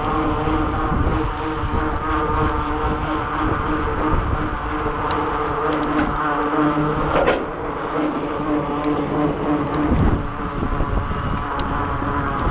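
Wind and tyre noise from a bicycle rolling along a wet paved path, picked up by a camera mounted on the bike or rider, with a steady hum running through it. The level dips briefly about seven and a half seconds in and again near ten seconds.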